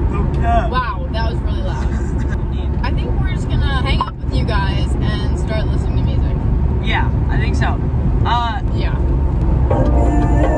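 Steady low road and engine rumble inside a moving car's cabin, with voices talking over it in short stretches.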